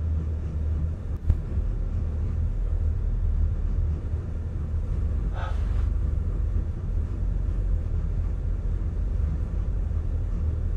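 Steady low engine and tyre rumble inside a truck cab as it drives slowly along a snowy dirt trail. There is a sharp knock about a second in and a brief higher-pitched sound midway.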